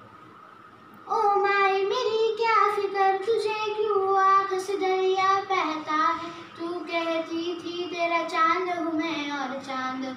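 A young girl singing solo and unaccompanied, holding long drawn-out notes. She comes in about a second in after a brief breath pause.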